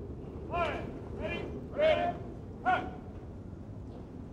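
Shouted military drill commands carrying across the parade field from troops in formation: four drawn-out calls in quick succession, the third the loudest, over a steady outdoor background hum.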